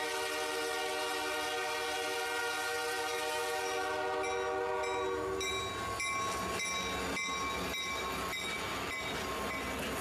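Train air horn holding a chord of several notes for about five and a half seconds, then the rhythmic clickety-clack of train wheels over rail joints, a knock a little under twice a second.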